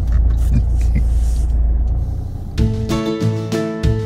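Low, steady car engine rumble heard from inside the cabin, cut off after about two and a half seconds by strummed guitar music.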